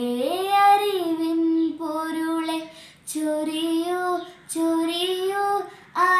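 A girl singing a Malayalam Christmas carol solo and unaccompanied, holding long notes, with a breath about halfway through and another near the end.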